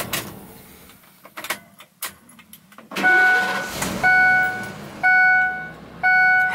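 A few clicks, then the Ford E450 box truck's engine starting about three seconds in, joined by the seatbelt warning chime, a single pitched tone repeating about once a second.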